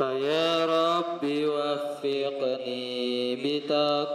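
A male voice chanting Arabic verses to a slow melody through a microphone, holding long notes that step up and down in pitch.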